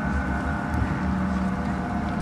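Large gongs ringing on in a steady, many-toned drone with a deep hum beneath, with no fresh strike, as in a gong bath.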